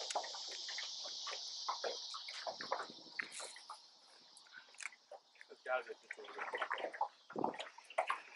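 Lake water lapping and dripping in small irregular splashes against the boat, under a steady high hiss that fades out about four seconds in.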